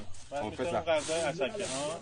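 Voices talking, with a dry hissing rustle from about a second in as pounded cassava flour is shaken and sifted on a flat round tray.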